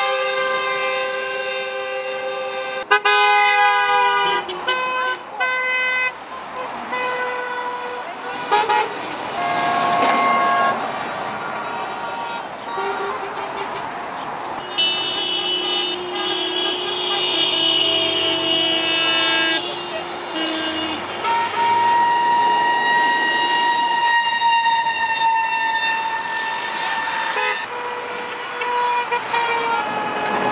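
Passing vehicles sounding their horns one after another, truck air horns among them: long held blasts, sometimes overlapping, and a run of short toots a few seconds in. The drivers are answering a protest sign that asks them to honk.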